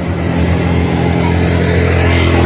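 Honda Beat 110cc scooter's single-cylinder engine idling steadily, a low even hum.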